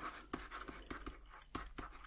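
Faint, light scratching and small irregular clicks from hands working at a desk close to the microphone.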